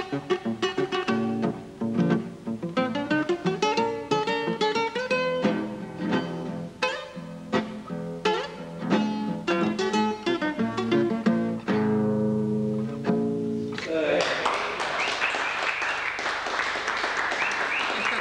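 Solo nylon-string acoustic guitar playing a foxtrot, picked single-note melody over chords in the player's own non-standard tuning, closing with a run of repeated chords. About fourteen seconds in the playing stops and applause follows.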